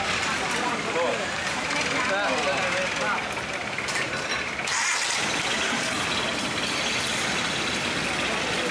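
Background chatter of several voices over a steady mechanical hum, typical of the ambience at a busy floating-market stall.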